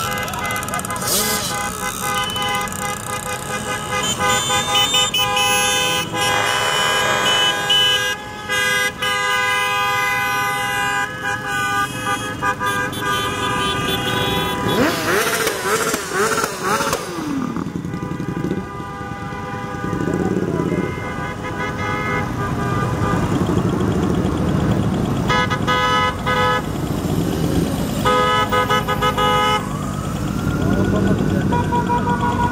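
A procession of motorcycles and quads riding past with their engines running, horns honking in long held blasts, and an engine revving up and down about halfway through.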